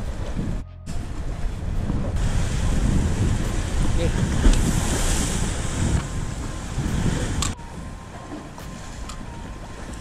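Wind buffeting the microphone over sea surf washing against rocks, with a short gap just under a second in, louder through the middle and dropping back about seven and a half seconds in.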